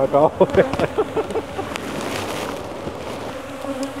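Honey bees buzzing close around the microphone, several passing right by it so that the buzz wavers up and down in pitch, with a few sharp clicks. They are agitated, defensive bees from a cranky hive.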